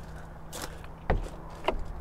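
Motorhome habitation door being unlatched and pulled open: three short clicks from the handle and latch, the loudest with a dull thump about a second in.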